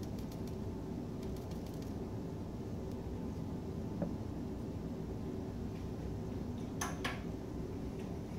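Steady low mechanical hum with no change in level, broken by a faint click about halfway through and two sharp clicks in quick succession near the end.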